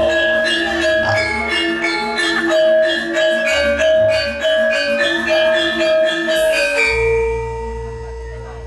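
Javanese gamelan playing, its metallophones striking a quick, even run of pitched notes. The playing stops about seven seconds in, leaving a single long low note ringing.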